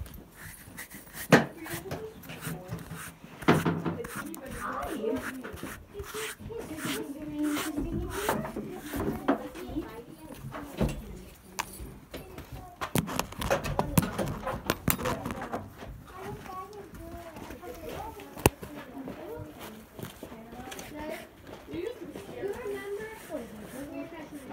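Indistinct talking that the words cannot be made out of, with sharp knocks and rubbing from the phone being handled; the loudest knocks come about a second in, about three and a half seconds in, and near eighteen seconds.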